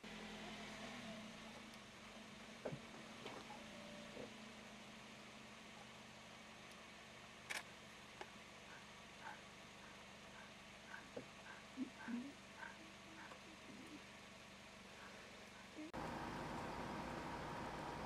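A vehicle engine idling faintly, a steady low hum, with a few light clicks. In the middle, a short high chirp repeats about twice a second for several seconds.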